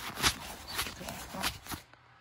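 Rubbing and handling noise from a phone's camera lens being wiped clean: several short scrubbing strokes right against the microphone that stop suddenly near the end.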